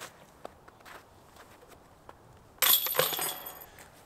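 A sudden clinking clatter lasting about a second, starting a little after halfway, after a few seconds of faint sound.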